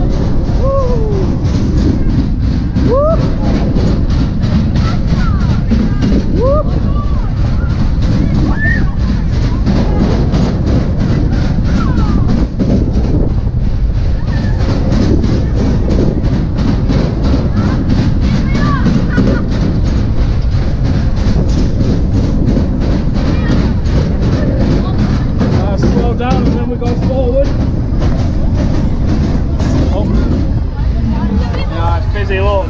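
Sobema Matterhorn funfair ride running at speed: a loud low rumble with a rapid, even clatter from the cars on the track, scattered whoops from riders, and music.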